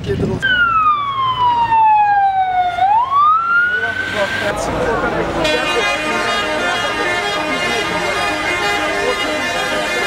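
Emergency vehicle siren: a wail that falls slowly in pitch, then rises and holds, followed from about halfway by a long, steady, buzzy horn-like tone.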